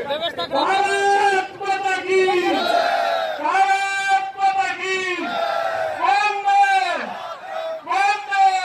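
Slogans chanted at a political rally: short shouted phrases repeated about once a second, each rising and then falling in pitch, with a crowd.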